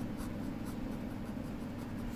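Ballpoint pen writing on ruled notebook paper: faint, light scratching strokes over a steady low hum.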